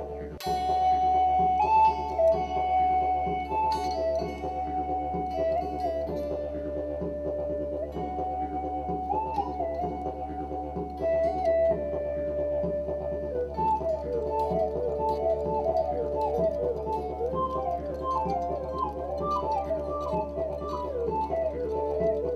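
An electric guitar driving a Roland guitar synthesizer, playing a melody of held notes that step up and down over a steady low drone.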